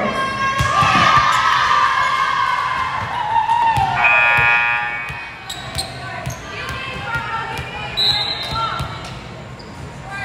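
Volleyball players' voices shouting and calling in an echoing gymnasium, with one call held briefly about four seconds in and sliding down in pitch. Scattered sharp thuds of the ball being hit and landing on the hardwood court sound among the voices.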